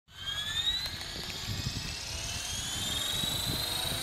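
Align T-Rex 500 electric RC helicopter spooling up on the ground: a high whine from its motor and gearing that rises slowly and steadily in pitch as the rotor speeds up.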